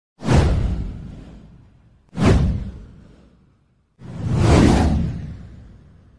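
Three whoosh sound effects of a title animation, about two seconds apart. The first two hit sharply and fade away; the third swells up more gradually before fading.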